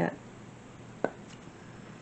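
A single sharp, light tap about a second in, like a small object knocked or set down on the craft table, against a quiet room.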